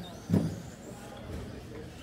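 A single heavy thump about a third of a second in, over the faint high whine of electric radio-controlled short-course race trucks running on the track.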